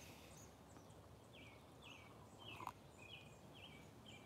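Quiet outdoor background with a faint bird calling a series of about six short falling notes, roughly two a second, through the second half. A soft tap about two and a half seconds in.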